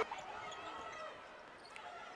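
Faint audio of a televised basketball game: low arena background sound with a ball bouncing on the court.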